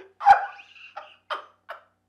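A man laughing hard, starting with a loud, sharp burst and going on in short, gasping bursts.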